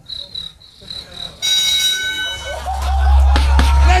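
A beatboxer performing into a microphone: a high, pulsing chirp-like whistle, then a sudden hit about a second and a half in, followed by a deep sustained bass under sharp clicks.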